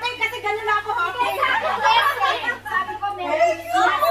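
A group of women talking over one another, several voices overlapping at once.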